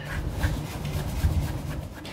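Paintbrush bristles sweeping over the knobs and faceplate of a dusty mixing console: an uneven, scratchy rustling of brush strokes.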